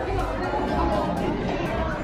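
Several people chattering and talking over each other, with background pop music and a steady beat underneath.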